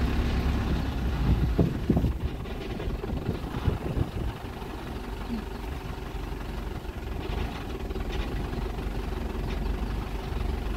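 A vehicle engine running at low revs as it creeps along behind a walking elephant, a steady low rumble, with a few knocks about one and a half to two seconds in.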